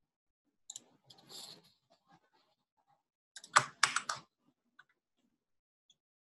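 Computer keyboard and mouse clicks: a few light clicks about a second in, then a quick run of about five louder clicks around three and a half to four seconds in.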